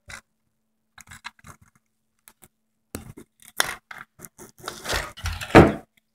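Handling noise from a 1950s Bell & Howell Filmo camera: sharp clicks and scraping of its metal parts as a stiff side fitting is worked. The clicks are scattered at first, then come thicker and louder over the last three seconds.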